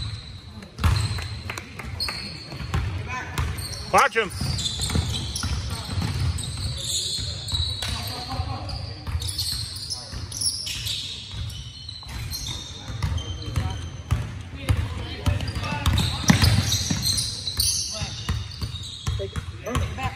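Basketball game on a hardwood gym floor: a ball dribbling, short high squeaks of sneakers, and the voices of players and onlookers, with a rising shout about four seconds in.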